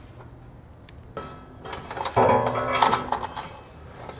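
Steel trailer hitch clanking and rattling against the underbody as it is lifted into place, with a louder ringing metallic knock about two seconds in.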